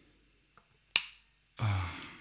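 A single sharp snip about a second in: end-cutting pliers cutting through a steel electric-guitar string end at the headstock, trimming the excess string after restringing. A brief noisy sound follows near the end.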